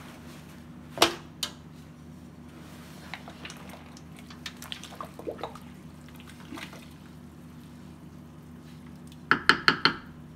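A wooden spatula stirring clothing in a large aluminium stockpot of hot dye water. There is a sharp knock against the pot about a second in, soft splashing and sloshing in the middle, and a quick run of about five raps near the end, all over a steady low hum.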